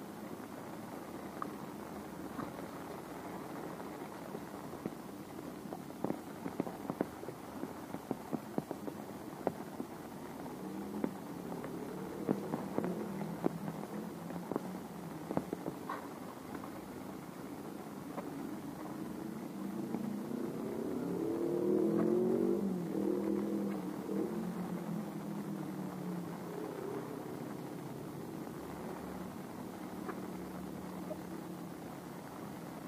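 Steady rainfall with scattered sharp drip ticks, and a motor vehicle's engine that comes in about a third of the way through, rises in pitch and loudness to its loudest point past two-thirds of the way in, then fades as it passes.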